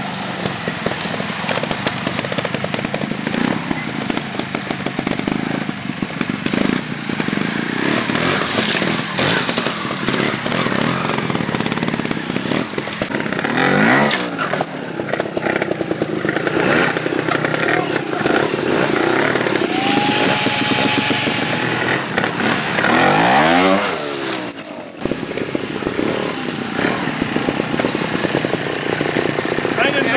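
Trials motorcycle engines picking their way through a rocky section: low-speed running, broken by sharp throttle bursts whose revs rise and fall, about halfway through and again near three-quarters of the way.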